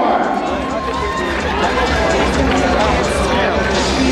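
Crowd chatter in a large hall: many voices talking and calling out at once, none clear, over a low steady hum.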